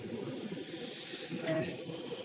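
A steady hiss, brightest in the high range, swelling slightly around the middle, over a faint low murmur.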